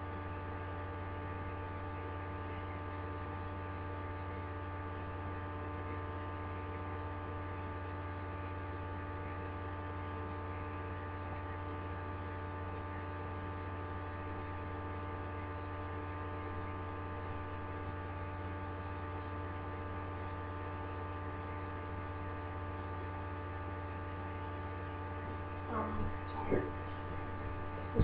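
Steady electrical hum, with a strong low drone and several fainter steady tones above it, unchanging throughout. A few faint clicks come near the end.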